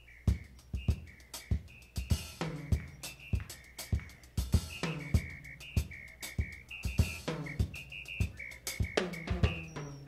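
Drum kit playing an unaccompanied groove to open a jazz-funk tune: regular kick and snare hits with a short high ringing two-note pattern alternating between them. The full band comes in right at the end.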